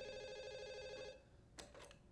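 A telephone ringing: one ring with a rapid flutter that stops about a second in. A few faint clicks follow near the end.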